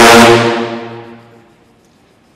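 A sousaphone ensemble sounds a loud, low brass chord that dies away over about a second and a half.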